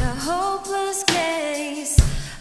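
Chamber-pop band playing live, with a woman's voice singing long held, wavering notes over the instruments. Sharp drum hits land at the start and again about halfway, and the low end drops away in the second half.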